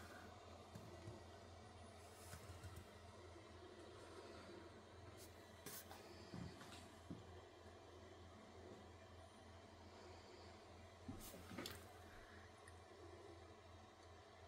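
Near silence: the faint steady hum of a Vivo wireless charging stand's cooling fan running as it flash-charges a phone, with a few faint clicks.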